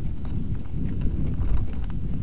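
Full-suspension mountain bike (Norco Sight Alloy) riding fast down a rough dirt singletrack: a continuous low rumble of tyres over the ground, with rapid irregular clicks and knocks as the bike jolts over bumps, heard through an action camera.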